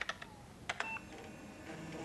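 A few separate keystrokes on a computer keyboard, followed by a short high electronic beep about a second in.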